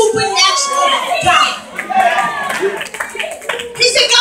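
Church congregation calling out loudly in praise over scattered hand claps.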